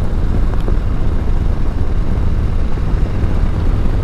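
Harley-Davidson Street Bob's Milwaukee-Eight 114 V-twin engine running steadily at cruising speed, a low, even rumble mixed with road and wind noise.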